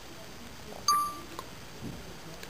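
A 4th-generation iPod Touch plays a single short beep from its speaker as Voice Memos starts recording, followed by a faint click.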